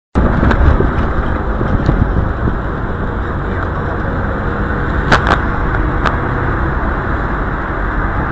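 Street noise picked up on a handheld camera: a steady low rumble like traffic, with a few sharp clicks, likely handling noise, about five to six seconds in.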